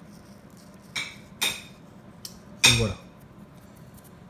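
A few brief, light rustling clicks from poppy seeds being sprinkled by hand onto raw cracker dough on a dehydrator tray: two about a second in, half a second apart, and a faint tick a little later.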